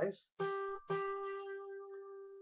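Acoustic guitar's second string plucked twice on the same note, the G at the eighth fret, about half a second apart, the second note left ringing and slowly fading.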